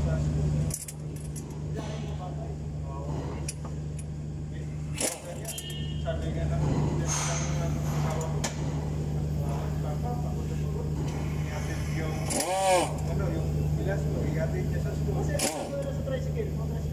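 Metal hand tools clinking and knocking several times against a steady low hum, with indistinct voices in the background.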